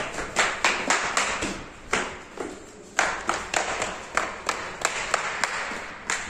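Footsteps of someone in slippers (chappals) walking quickly down concrete stairs and onto pavement: a string of sharp, irregular slaps, about three a second.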